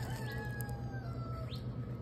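A long, drawn-out animal call that falls slowly in pitch for about a second and a half, over a steady low hum.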